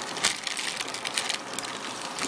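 Plastic fish bag crinkling and rustling as it is handled at the aquarium, with irregular small crackles.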